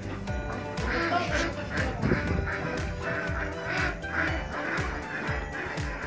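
Background music with a steady beat, with ducks quacking repeatedly over it.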